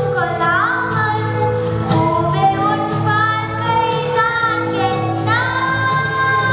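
A young girl singing into a microphone over backing music, with long held notes and sliding pitch.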